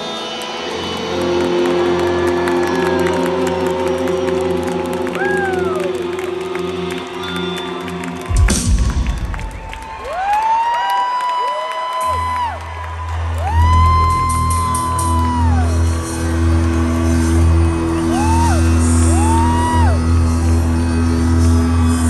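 Live rock band playing through an arena PA, recorded from the crowd. About eight seconds in a loud crash ends one passage and the low end drops out; a few seconds later a sustained low bass and keyboard drone starts, with rising and falling whoops from the audience over the music.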